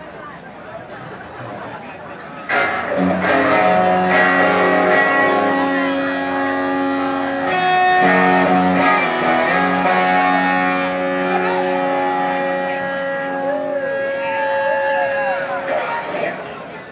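Live rock and roll band through an outdoor PA: after a couple of seconds of crowd chatter, loud electric guitar chords ring out over a low bass note and are held long, with a short break about halfway, then cut off just before the end.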